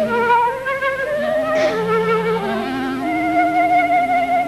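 Clarinet playing a melody, moving note by note with a slightly wavering pitch, dipping to a low note about halfway through.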